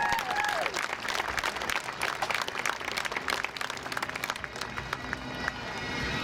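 A pipe band's bagpipes dying away at the end of a tune, the pitch sagging before they cut out, followed by the crowd applauding.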